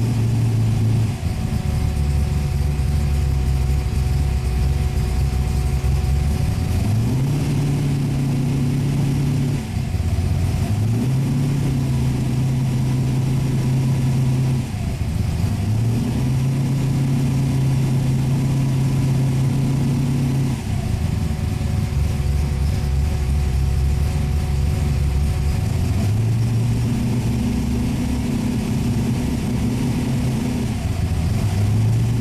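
The V8 engine of a V8-swapped Mazda Miata running, its speed stepping up from idle to a higher held speed and back down several times. Each step takes about a second, and each speed holds steady for a few seconds.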